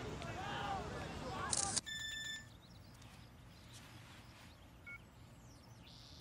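Distant voices of children playing on a football pitch, then a smartphone's camera shutter sound with a short electronic tone about two seconds in. After that comes quiet background, with a brief electronic chirp near the end.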